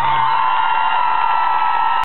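A high voice holds one long note, sliding up into it and then staying steady, as the backing music stops about half a second in. Crowd noise runs beneath it.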